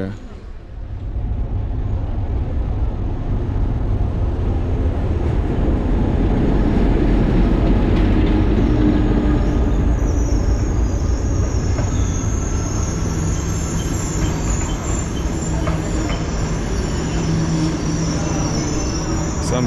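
Kenyan SGR diesel-hauled passenger train pulling into the station alongside the platform: a low rumble of wheels on rail that builds over the first few seconds. From about ten seconds in a high-pitched squeal joins it as the train brakes to a stop.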